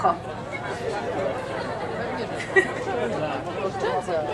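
Overlapping chatter of several people talking at once, with no one voice standing out.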